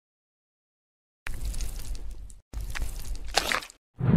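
Added sound effect of a centipede being pulled out of a hole in the sole of a foot: two crackly, squishy bursts of about a second each, starting about a second in with a short break between them.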